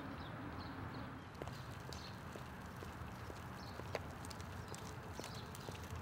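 A Graco stroller pushed along an asphalt street: its wheels rolling with a low rumble and scattered light clicks and taps, with the walker's footsteps.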